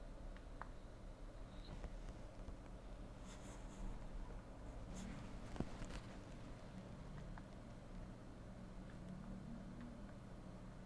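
Faint handling sounds of a ZTE Blade A1 smartphone held in the hands: fingertip taps and rubs on the phone's body and fingerprint sensor during fingerprint enrolment. There is a sharper click about five and a half seconds in, all over a low steady hum.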